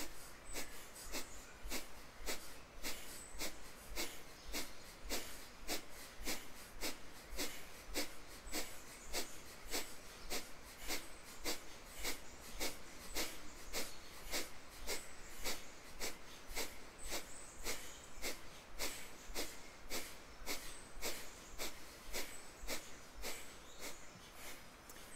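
Kapalabhati breathing: a steady run of short, forceful exhales through the nose, about two sharp puffs a second, each one driven by a pump of the belly, with passive inhales between.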